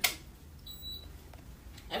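A near-quiet room with one faint, short, high electronic beep a little under a second in.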